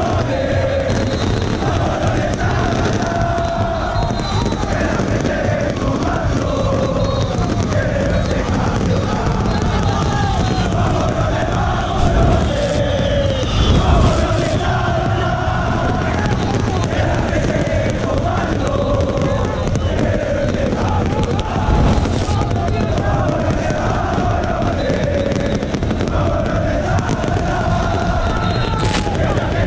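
Large crowd of football supporters singing a chant together in unison. Several loud firework bangs cut through the singing about halfway through and again later.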